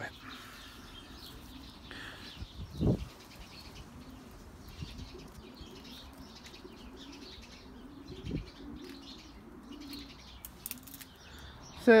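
Faint, low bird call repeated over and over, with soft rustling and two dull thumps, about three seconds in and again about eight seconds in.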